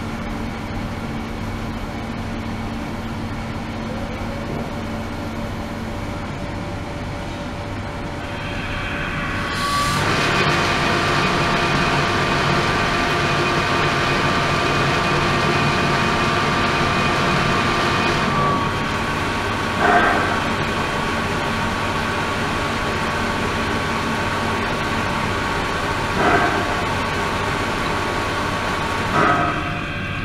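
Ultrasonic cleaning tank running with its water circulation pump: a steady machine hum with several steady tones over a noise of moving water. About a third of the way in the sound turns louder and brighter, with a steady whistling tone added, and three brief swells come in the second half.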